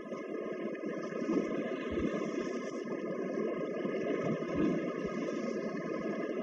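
Sound effect of a flowing river: a steady rushing of water that fades up over the first second, with a faint steady hum above it.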